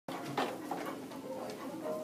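A single short knock about half a second in, as a plastic cavaletti pole is kicked, among a few faint ticks of steps on a rubber floor mat.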